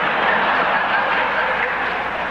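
A large audience in a lecture hall laughing together: a loud, even wash of laughter that swells just after the joke and dies away as the lecturer starts speaking again.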